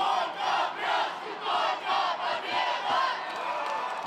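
Crowd of ice hockey spectators cheering and shouting, many voices rising and falling in waves.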